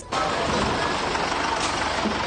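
Old minibus driving past close by, its engine and tyres making a steady, loud rush of noise.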